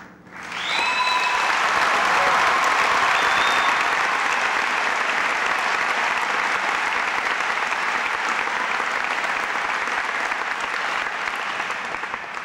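Large audience applauding, rising about half a second in and slowly tapering off near the end, with a brief whoop near the start.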